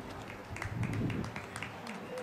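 Scattered hand clapping from a few people, sparse and irregular, over a low murmur.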